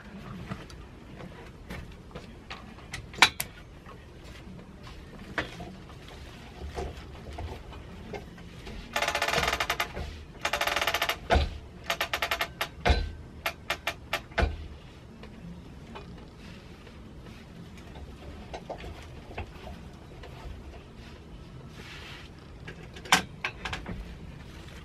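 Longarm quilting frame's roller being turned to roll up the quilt top: two bursts of rapid clicking about nine to eleven seconds in, with scattered separate clicks and knocks around them.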